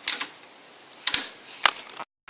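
Three sharp clicks: one at the start with a brief hiss after it, one a little past a second in, and one near the end.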